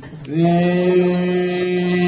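A man's voice singing one long, steady held note into a handheld microphone, starting about a third of a second in.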